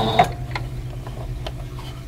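Domestic sewing machine running slowly as it stitches an appliqué edge, a steady low hum with faint ticks from the needle strokes. It is louder for the first moment and settles to an even hum about a quarter second in.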